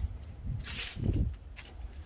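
Soft footsteps on concrete and a brief rustle of the phone being handled, over a low steady rumble.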